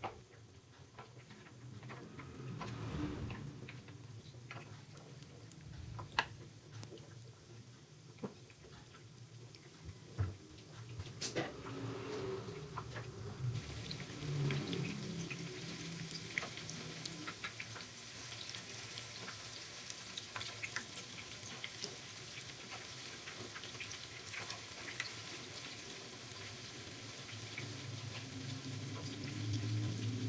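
Batter-coated tempeh slices shallow-frying in hot oil in a pan: a steady sizzle with scattered crackles and pops, growing fuller from about halfway through.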